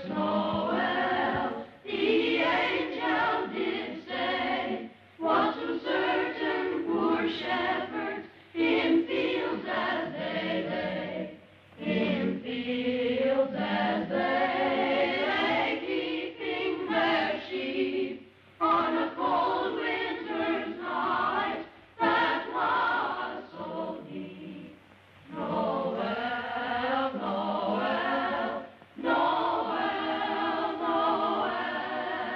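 A choir singing, in phrases of a few seconds broken by short pauses.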